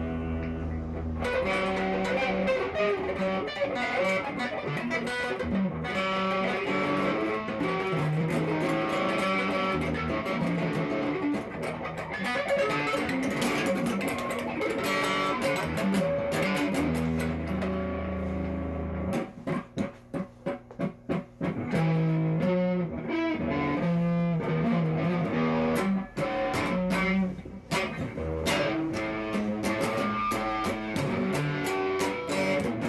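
Les Paul-style electric guitar played with a pick: runs of single notes and riffs, with a burst of short, choppy stabs about twenty seconds in.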